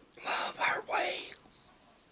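A man whispering a short phrase, lasting about a second and ending just past the middle.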